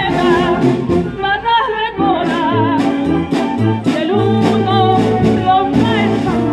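Amateur wind band playing a Spanish copla: brass and woodwinds over a steady bass line, with a melody sung or played with a strong vibrato on top.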